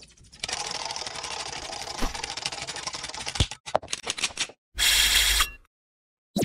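Sound effects of an animated logo intro: a rapid clattering rattle, like fast typing, for about three seconds, a few sharp clicks, then a short loud noisy burst near the end.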